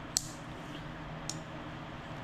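Two short plastic clicks as the parts of a baby bottle are handled, the first louder, over a steady low hum.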